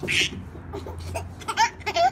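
Toddlers' laughter: short, high squeals and giggles in quick bursts, coming thicker near the end.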